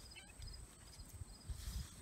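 Faint outdoor ambience: a low rumble with short, faint high chirps repeating in the background.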